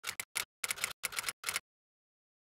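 A quick run of typewriter-style key clicks, a typing sound effect, that stops about three-quarters of the way through.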